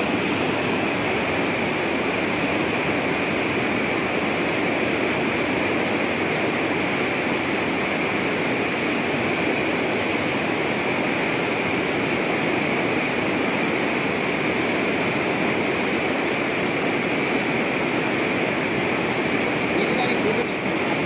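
Water rushing and splashing steadily in a water treatment plant's filter beds and channels, a loud continuous noise that stays even throughout.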